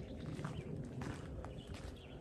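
Faint footsteps on gravel, a few soft steps over a low, steady rumble.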